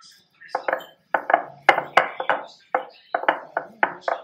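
Hands kneading soft yeast dough on a flour-dusted board: a repeated pressing, slapping stroke about three times a second, with sharp metallic clinks from bangles striking as the hands push down.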